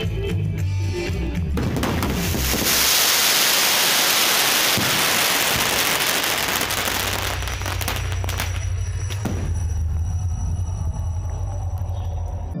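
Music with a bass line plays throughout. From about two seconds in to about seven, a dense crackling hiss of fireworks bursting overwhelms it and is the loudest part.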